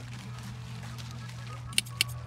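Hand shears snipping green onions: a quick double snip near the end, over a steady low hum.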